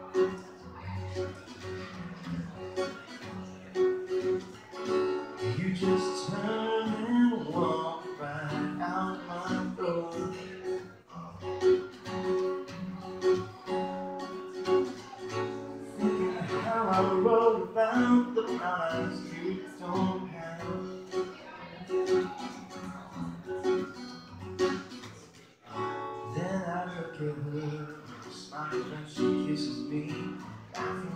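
Acoustic guitar strummed steadily in a live set, the playing dropping away briefly about 25 seconds in before picking up again.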